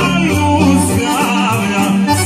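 Live Serbian folk band: a male singer singing through an amplified microphone over accordion, electric guitar, keyboards and drums, with a steady bass line underneath.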